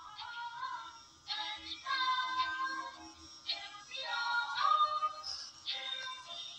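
Film score: a wordless, voice-like melody that glides up and down over a held low note.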